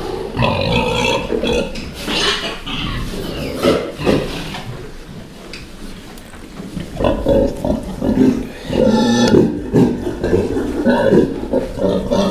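A pen of large fattening pigs grunting irregularly, dying down a little midway, then louder and more frequent from about seven seconds in.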